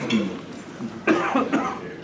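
Coughing, with a short stretch of voices about a second in.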